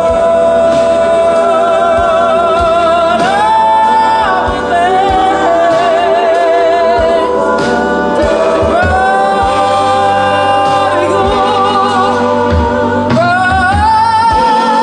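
Live band performance of a soul-pop song: a female lead singer holding long notes with vibrato, with backing harmony vocals, over upright bass and drums.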